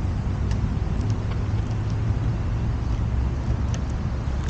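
Steady low wind rumble on the action camera's microphone, with a few faint ticks.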